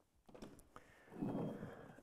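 Faint handling noise at the workbench: a few light clicks, then a short soft rubbing noise a little over a second in.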